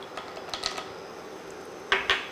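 Cashew pieces dropping into hot oil in a nonstick frying pan: a few light clicks and taps over a faint, steady sizzle, with one sharper click near the end.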